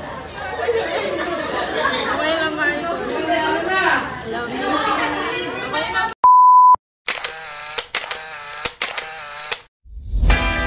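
Voices for about six seconds, then a sudden cut to a single steady electronic beep lasting about half a second, the loudest sound here. More voice-like sound follows before the end.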